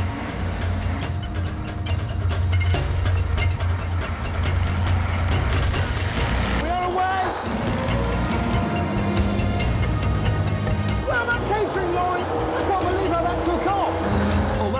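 Engines of heavy airport vehicles running and pulling away, a steady low drone, under a music track with a steady beat.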